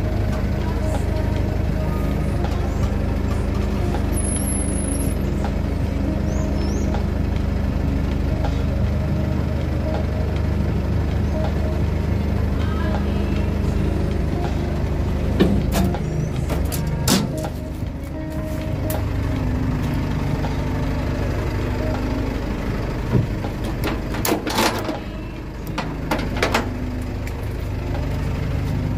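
Flatbed tow truck's engine running steadily, with a few knocks and clanks about halfway through and again near the end.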